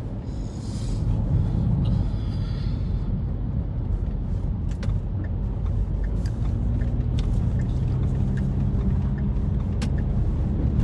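Steady low rumble of a car's engine and road noise heard from inside the cabin, with a steadier engine hum settling in about halfway through and a few faint ticks.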